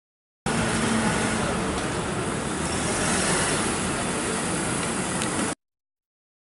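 Steady noise of a car running, starting and cutting off abruptly, with a faint click near the end.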